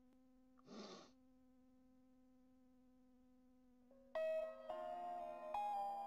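A steady, faint electrical-sounding buzzing hum, with a short breathy rush about a second in; about four seconds in, keyboard music starts, a line of held notes changing in pitch, and it is the loudest sound.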